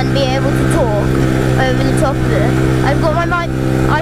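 Yamaha Raptor 700R quad's single-cylinder four-stroke engine running at a steady, unchanging pitch while the quad cruises along a grassy trail, with a voice over it.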